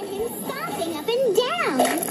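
A cartoon character's wordless vocalising in frustration, its pitch swooping up and down, with the widest swoop near the end.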